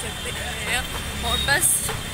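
A woman talking over busy street traffic: a steady low rumble of passing motor scooters and auto-rickshaws, swelling briefly about a second in.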